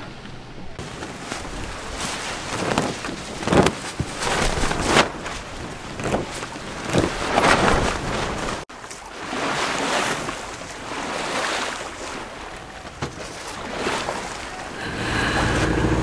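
Wind buffeting the microphone and seawater rushing along a sailboat's hull under spinnaker, rising and falling in uneven surges. The sound breaks off for an instant a little past halfway, then carries on.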